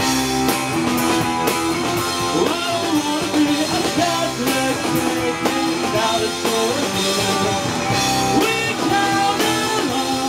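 Live rock band playing: electric guitar, drum kit and keyboard, with a steady drum beat and bending guitar notes.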